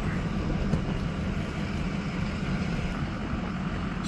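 Steady road noise inside the cab of a vehicle driving slowly along a gravel road: a low engine and tyre rumble with no distinct knocks or changes.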